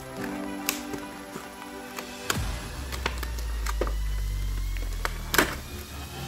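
Background music of held, sustained tones, with a deep bass note coming in a little before halfway. A few sharp clicks and taps sound over it as plastic doll-outfit packaging and its tethers are handled.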